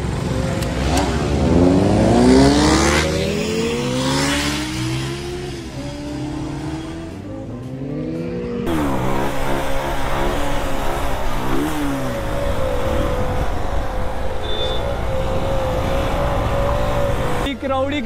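Motorcycle engines revving, their pitch rising and falling several times, with voices around them. Then, after an abrupt change, one motorcycle engine heard up close from its own seat, revving and then held at a steady high pitch as the bike is ridden.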